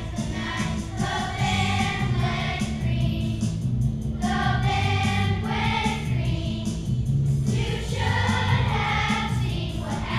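Children's choir singing a song with accompaniment, in phrases of long held notes with short breaths between them.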